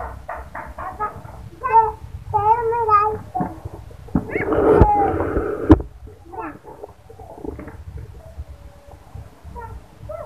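Young children's voices at play: high, warbling calls and laughter, with a louder, breathy outburst around the middle and one sharp knock just before six seconds in.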